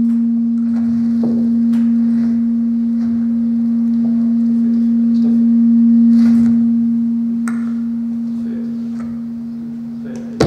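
A loud, steady, low electronic tone from the hall's sound system, holding one pitch throughout and swelling and easing slightly, with a few faint knocks beneath it.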